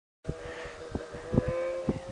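Snowmobile engine running with a steady droning tone that creeps slightly up in pitch, broken by a few short low thumps.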